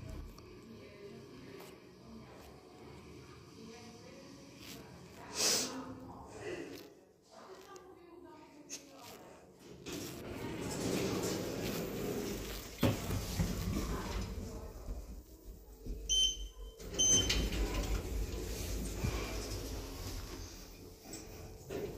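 Schindler passenger lift arriving at the ground floor, its doors sliding open with a drawn-out rumbling and a knock. Two short electronic beeps follow near the end.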